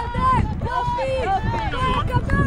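Several voices shouting and calling out over one another, in high raised tones, with a steady low rumble underneath.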